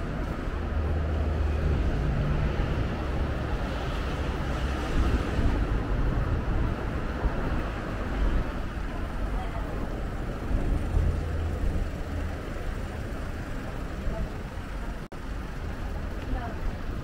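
City street ambience beside a busy road: steady traffic rumble, swelling as heavier vehicles pass about a second in and again around ten seconds in, with pedestrians' voices mixed in. The sound drops out for an instant near the end.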